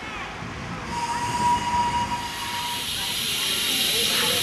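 Miniature live-steam locomotive, a pseudo Midland Compound: a steady whistle blast of nearly two seconds starting about a second in, over a hiss of steam that swells toward the end.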